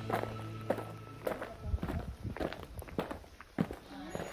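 Footsteps on a concrete path, about two steps a second, with background music underneath.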